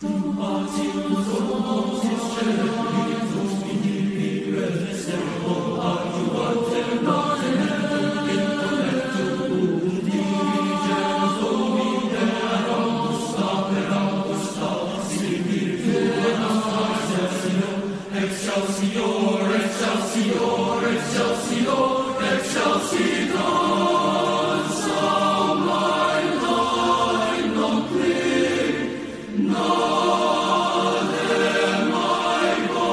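Boys' choir singing in parts, the voices coming in together right at the start after a brief pause, with a short dip about a second before the end.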